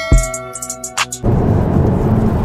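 Hip-hop style background music with a deep bass hit and hi-hat clicks, cutting off about a second in to the steady low rumble of a 6th-gen Camaro ZL1 heard from inside the cabin while driving.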